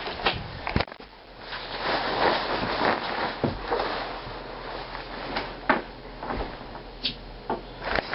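Rustling and handling noise from a camera being carried about a small room, with a few sharp knocks.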